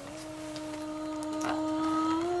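A dog howling: one long held note that rises slightly toward the end.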